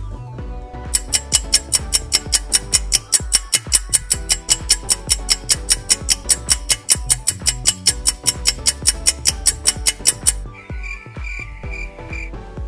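Background music with a steady beat: quick, crisp ticks at about five a second over a low bass line, stopping shortly before the end, where a short pulsing high tone follows.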